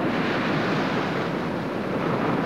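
A steady, loud rushing rumble like strong wind or heavy surf.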